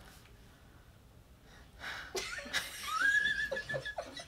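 Women laughing, beginning about two seconds in after a quiet pause, with a high squeal that rises and holds briefly near the end.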